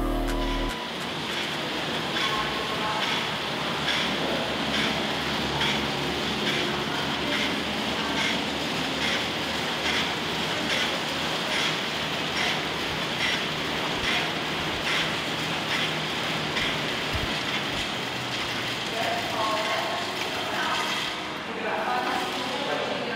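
Air bike with its fan running steadily as it is ridden, a whooshing rush of air that pulses about twice a second with the pedal and handle strokes.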